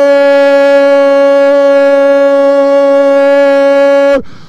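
A football commentator's long drawn-out "gooool" goal cry: one loud shout held on a single steady pitch.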